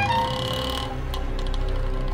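Film background music: steady held tones over a low pulsing rumble, with a high tone that stops about a second in.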